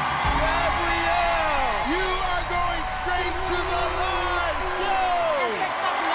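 Talent-show broadcast audio: voices over background music and crowd noise.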